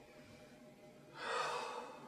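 A person's heavy sigh: one breathy exhale of just under a second that starts about a second in, over a quiet room.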